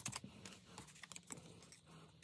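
Faint, light taps and rustles of paper: fingers handling pieces of paper and pressing them onto a collage, a few small irregular clicks a second.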